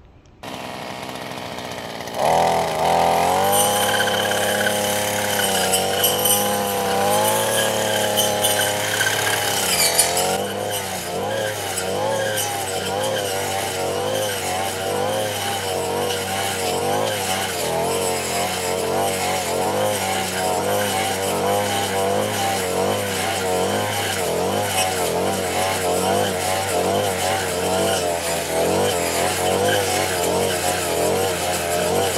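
Coocheer 58cc two-stroke brush cutter running at high revs, coming in about two seconds in. Its engine pitch wavers up and down as it is swung through tall grass.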